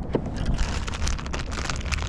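Crinkling and rustling of a clear plastic bag of soft-plastic swimbaits as it is handled and opened, a dense run of crackles starting about half a second in. Wind rumbles low on the microphone underneath.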